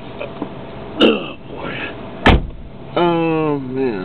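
A person's voice making short, unclear vocal sounds and one drawn-out falling sound about three seconds in, with a sharp knock a little after two seconds in.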